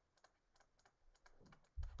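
Faint, irregular taps and clicks of a stylus writing on a tablet.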